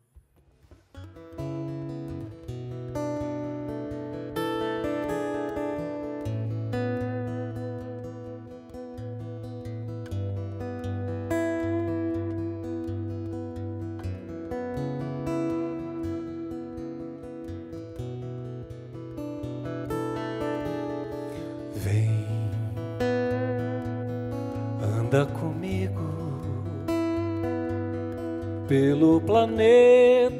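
Solo acoustic guitar playing a song's instrumental introduction: picked notes in a steady rhythm over a repeated low bass note.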